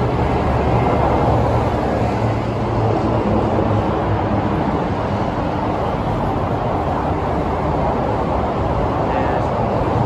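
Steady, loud noise of Interstate 80 freeway traffic passing close by.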